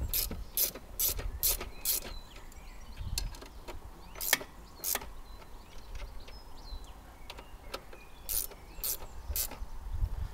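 Ratchet wrench clicking in short bursts as the wheelie bar's mounting bolts are tightened: a quick run of about five clicks at the start, two more midway and three near the end, over a low rumble.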